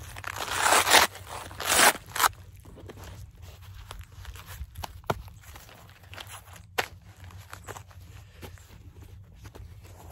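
Hook-and-loop (Velcro) fastener on a plate carrier's cummerbund rasping twice, each about a second long, in the first two seconds as the flaps are pulled and pressed into place around the carrier. Quieter nylon rustling and a few light clicks of the gear follow as the carrier is settled on.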